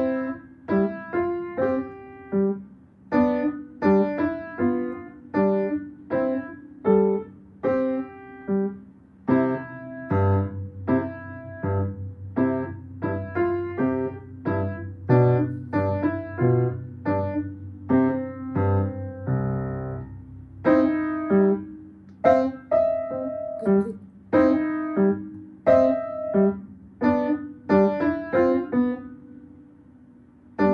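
A child playing a short beginner's march on the piano: single struck notes in a steady, moderate rhythm. A low bass line joins about a third of the way in and drops out again before the melody carries on alone.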